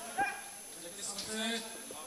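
Short, broken fragments of a man's voice, with one sharp, loud knock about a fifth of a second in.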